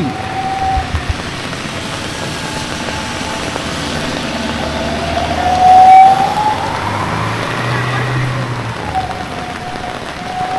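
Steady rain falling on a wet street. A whining tone glides up in pitch and is loudest about six seconds in, then sinks back lower near the end.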